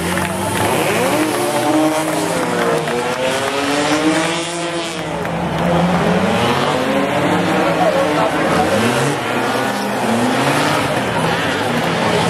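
Drift car engines revving up and down again and again during donuts, over the noise of spinning, squealing tyres.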